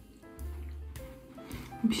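Soft background music with a low bass line and a few held higher notes.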